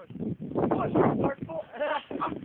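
A person's voice outdoors: irregular noisy sounds, then a short wavering vocal cry near the end.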